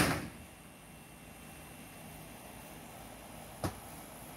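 A sharp knock at the very start that dies away quickly, then a much fainter click near the end, over a low steady background hiss.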